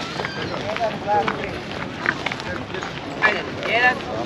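People talking: voices of passers-by heard over a steady outdoor background, with no single voice holding the foreground.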